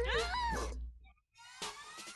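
A wavering, meow-like cry gliding up and down over a low hum, cut off about a second in; after a brief gap, a rising sweep comes in.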